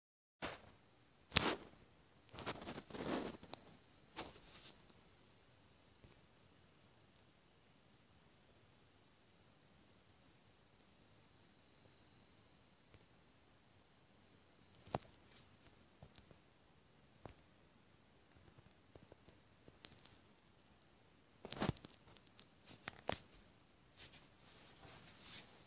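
Quiet room tone broken by a handful of short clicks and rustling handling noises, loudest about a second in and again near the end.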